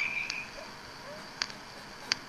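Pause on a telephone line: faint steady line hiss with two brief clicks.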